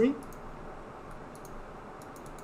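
A few faint computer mouse clicks over low steady room hiss.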